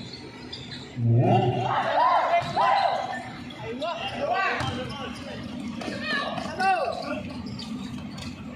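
Shouted calls from players and onlookers during a pickup basketball game, loudest a second or two in, over a basketball bouncing on the concrete court.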